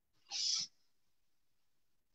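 One short swipe of a whiteboard eraser rubbing across the board, a soft swish about half a second long, starting a quarter of a second in.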